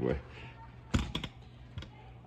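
A quick run of light clicks and taps about a second in, with one more tap near the end, over a low steady hum.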